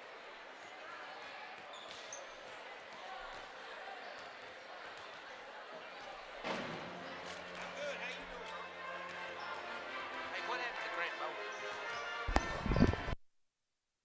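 Basketballs bouncing on a hardwood gym floor during warm-ups, over the chatter of a crowd, growing busier about halfway through. Near the end come a few loud low thuds, then the sound cuts off abruptly.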